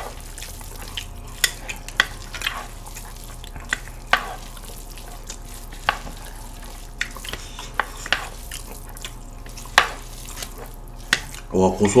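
Chopsticks tossing and stirring sauced cold bibimmyeon noodles in a bowl, with close-up eating sounds. Irregular sharp clicks and smacks come over a faint steady hiss.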